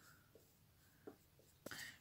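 Near silence: room tone, with a few faint, brief ticks.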